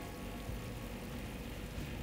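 Curd-marinated chicken pieces frying in oil and masala in a pan: a steady, soft sizzle.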